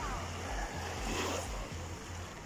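Steady sea surf and wind noise on a phone microphone, with a low rumble from the wind.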